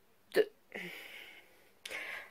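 A boy's single short, abrupt vocal sound, then a faint breath.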